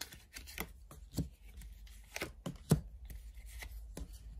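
Tarot cards being dealt and placed on a table, a series of soft, irregular taps and slides, the loudest just under three seconds in.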